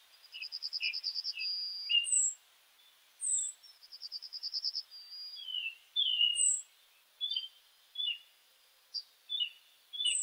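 Several songbirds calling. A fast trill that ends in a held note comes twice, among sharp high chirps and short whistled notes.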